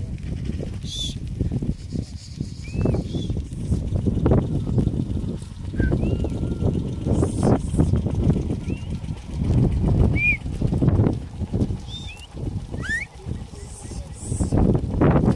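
A large herd of Somali goats on the move over dry dirt: a continuous, uneven rumble of hooves and shuffling bodies. Short chirping bird calls repeat over it.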